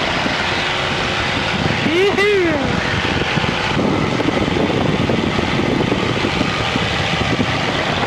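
Aerobatic biplane's propeller engine at full power on the takeoff roll, a steady loud drone with no let-up as the plane accelerates down the runway.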